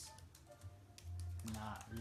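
Typing on a laptop keyboard: a scattering of light key clicks.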